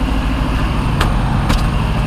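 Steady low rumble of a semi truck's diesel engine idling, with two short clicks about half a second apart near the middle.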